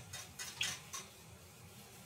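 Faint light ticks and scrapes of a small plastic spatula stirring melting shea butter and beeswax in a small metal saucepan, a few in the first second, then quieter.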